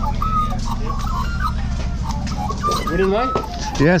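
Steady low mechanical drone of a running engine, with faint short high chirps above it; a man's voice comes in near the end.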